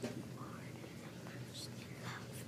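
A single light click right at the start, a plastic playset part being handled, then faint whispering.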